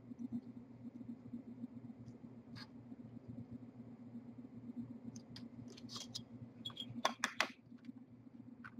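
Faint clicks and light taps of a metal straight-edge ruler and a triangle square being shifted and set down on a foam core sheet, over a steady low hum. The clicks come sparsely at first and cluster near the end.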